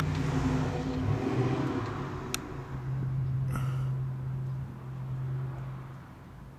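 A steady low engine hum with a noisy rush that fades over the first two seconds. Two brief sharp clicks come about two and three and a half seconds in.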